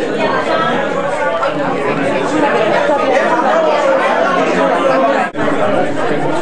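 Background chatter of many people talking at once in a large room, with no single voice standing out. A momentary gap in the sound near the end.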